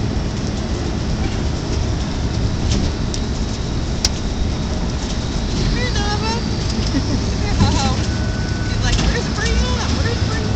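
A dog whining in short, high, wavering glides from about six seconds in, over a steady loud rushing noise with a low hum.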